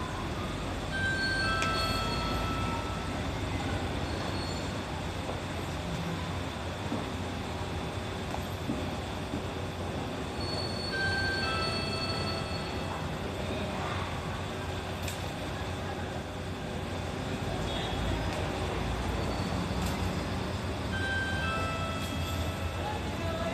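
City diesel bus idling at the stop with a steady low rumble. Short electronic chime tones sound about a second in, again around the middle, and near the end.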